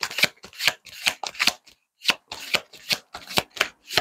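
A deck of tarot cards being shuffled by hand: quick repeated swishes and flicks of the cards, about four to five a second, with one short pause halfway through.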